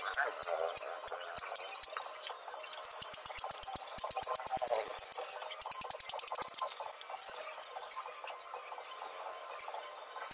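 A hand hammer striking a steel chisel held against an iron shovel blade on a small anvil, giving a series of sharp metallic taps. The strikes come in quick runs around the middle.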